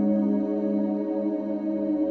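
Ambient space music: several drone tones layered and held steady, with no beat.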